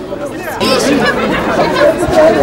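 A crowd of people talking at once, several voices overlapping, growing louder about half a second in.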